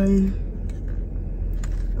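A plastic car phone mount being handled and fitted, giving a few faint clicks, over a steady low hum inside the car.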